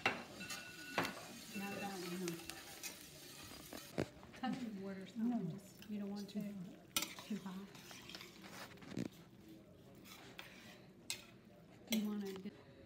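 A spoon stirring orecchiette pasta in a stainless steel sauté pan on the heat, with sharp clinks of the spoon against the pan every second or two over a faint sizzle.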